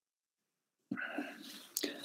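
Near silence for about a second, then a faint whispered murmur or breath from the speaker before he talks again.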